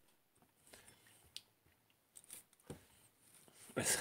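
Faint clinks and knocks of small drinking glasses and glass sample bottles being picked up and set down on a table: a few separate ticks, one with a short glassy ring about a third of the way in.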